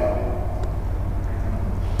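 Steady low hum with a faint even hiss, with no other event over it.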